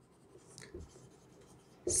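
Marker writing on a whiteboard: faint strokes about half a second in. A man's voice starts just before the end.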